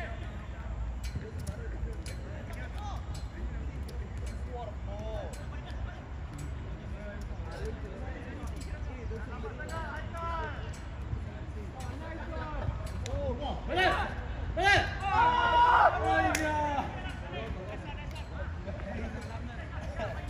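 Footballers shouting and calling to each other across an outdoor pitch, scattered short calls with a louder burst of several shouts about two-thirds of the way in, over a steady low rumble.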